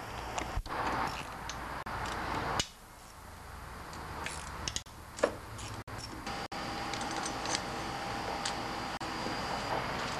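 Small bolts being undone from a plastic engine grill screen with a hand tool: a few faint metal clicks and clinks over a steady hiss.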